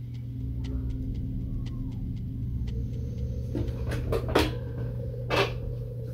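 Low rumbling drone of the cartoon's opening warning screen over a steady hum, with a few faint clicks early on and several short louder noises in the second half.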